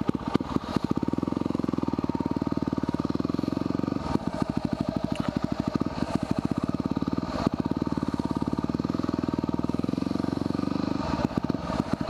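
The 2010 Yamaha WR250R's 250 cc single-cylinder four-stroke engine running at low speed as the bike creeps along, a steady rapid pulsing with slight throttle changes about four and seven seconds in.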